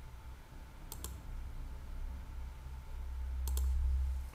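Computer mouse clicks: two quick double ticks, about a second in and again about three and a half seconds in, over a low hum that swells near the end.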